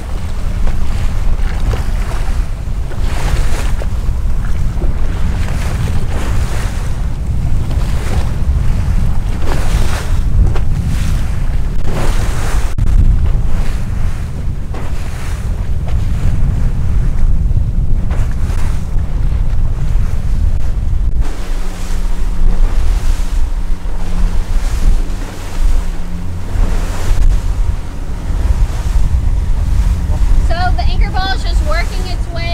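Heavy wind buffeting the microphone over the rush of waves and wake as an outboard-powered center-console boat runs through rough water. In the last third a steady low drone from the Suzuki outboard comes through under the wind.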